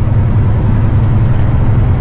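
Semi-truck diesel engine and road noise heard from inside the cab while driving, a steady low rumble.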